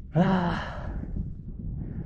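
A man's breathy, voiced sigh just after the start, falling in pitch, followed by a low steady rumble.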